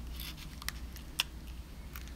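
Fingers handling small die-cut paper leaves and pressing them onto a card envelope: faint paper rustling with a few small sharp clicks, the clearest a little after a second in.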